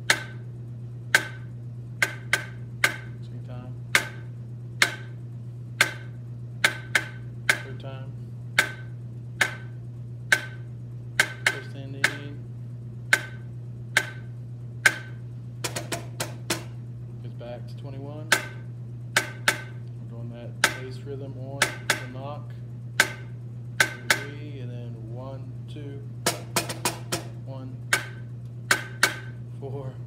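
Wooden drumsticks striking a drum, playing a snare drum rhythm as single sharp strokes, about one to two a second in an uneven pattern, with a steady low hum underneath.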